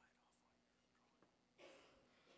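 Near silence: hushed room tone, with a brief faint whisper about one and a half seconds in.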